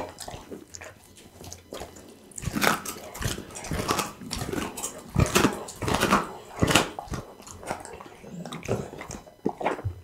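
Pit bull chewing a raw duck neck close to the microphone: irregular wet crunches and bites, sparse for the first couple of seconds, then coming thick and loud, easing off near the end.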